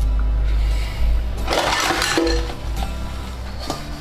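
Dishes being hand-washed with a soapy scouring sponge: a scrubbing rub about halfway through, then a short ringing clink of crockery, and a light knock near the end, over background music.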